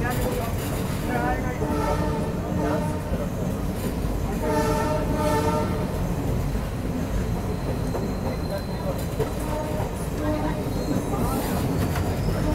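Passenger train coaches rolling slowly along the track, heard from an open door: a steady low rumble with wheel clatter. A thin high whine runs through the second half and rises in pitch near the end.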